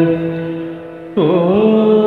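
Solo female voice singing a Carnatic-style devotional invocation. A long held note fades away, then a new note enters about a second in and slides through ornamental bends in pitch.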